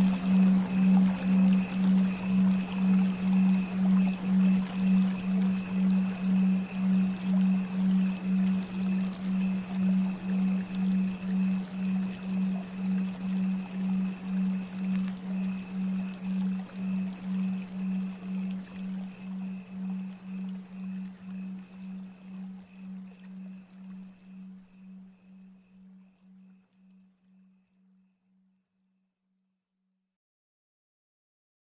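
Binaural-beat meditation tone: a steady low drone pulsing about twice a second, with a fainter high tone and a soft hiss of flowing water beneath, fading slowly to silence near the end.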